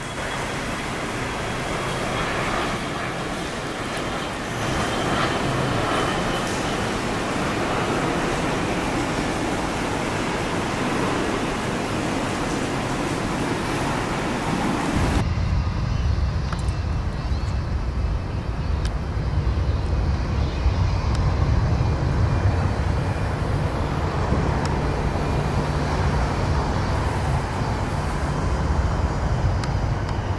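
Jet airliners on final approach, heard from the ground. First a steady broad jet roar with a faint high engine whine from an MD-80-series jet with rear-mounted engines. About halfway through the sound changes abruptly to a deep low rumble as a twin-engine jet approaches head-on.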